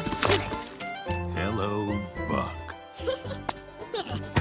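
Animated-film soundtrack: music under a sudden crack near the start and a baby dinosaur's squeaky, gliding cries in the middle, ending in another sharp crack as a hatchling breaks out of its eggshell.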